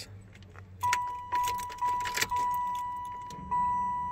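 Ignition keys jangling as the key is turned on in a 1994–96 Chevrolet Impala SS, then the car's warning chime: a steady high tone from about a second in that restarts several times and fades between strikes.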